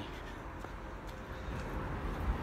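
Quiet outdoor street background: an even hiss with a low rumble on the phone's microphone as it is carried along at walking pace, growing slightly louder near the end.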